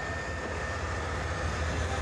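Tank engine running: a steady low rumble with a faint, steady high whine above it.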